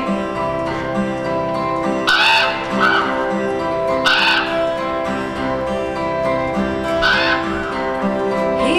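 Live band music in a slow passage: sustained held chords with guitar. Three short bright accents come about two, four and seven seconds in.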